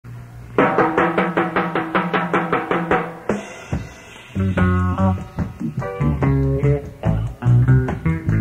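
Live reggae band playing a song's opening: drums and guitar in a quick, even rhythm, a short break about three seconds in, then the bass guitar and chords come in strongly about four and a half seconds in.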